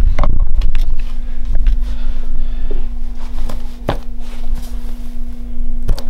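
Handling noise from a camera-mounted shotgun microphone as the camera is carried and moved: a continuous low rumble with several sharp knocks, over a steady low electrical hum.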